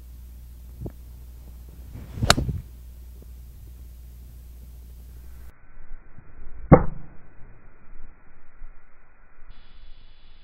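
An 8-iron swung through and striking a golf ball off turf: a short swish ending in a sharp click about two seconds in. A second, louder strike follows a few seconds later.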